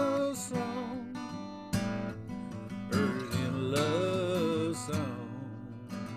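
Acoustic guitar strummed in a country-rock song. A voice holds a wavering melody line over it near the start and again from about three to five seconds in.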